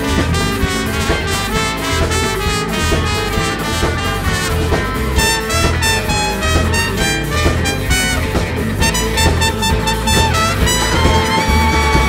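A live band playing an instrumental passage: acoustic and electric guitars over a steady drum beat, with a trumpet playing toward the end.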